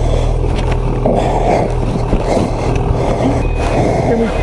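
Ski-Doo two-stroke E-TEC snowmobile engine idling steadily, with its reverse warning beeper starting a short high beep near the end.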